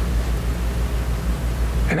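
A steady, even rushing noise with a deep rumble underneath, as loud as the voice around it. It cuts off at the end as speech resumes.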